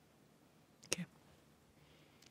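Near silence: room tone, broken about a second in by one brief spoken "okay".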